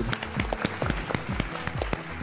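Scattered hand clapping from a few people, quick irregular claps, with a soft steady bass beat of background music underneath.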